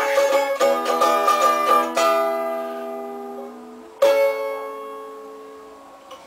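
A small ukulele-sized acoustic string instrument strummed quickly. Then two final chords, about two seconds apart, are each left to ring out and fade: the close of a song.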